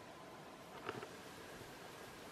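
Meltwater dripping off an icicle on a snowy roof edge: a couple of quick faint drips about a second in, over a steady faint hiss.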